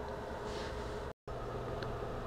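Steady low background hiss with a faint low hum, broken by a moment of total silence a little over a second in where the recording cuts.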